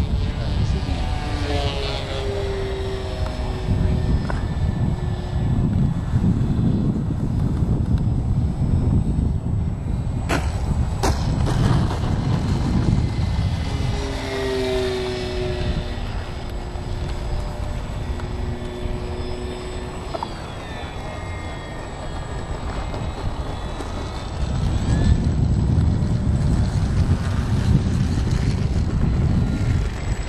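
E-flite Apprentice RC trainer plane's brushless electric motor and propeller whining overhead, the pitch swelling and fading and gliding as the plane passes and the throttle changes. A heavy low rumble of wind on the microphone runs under it, stronger near the start and the end, with a couple of sharp clicks about a third of the way in.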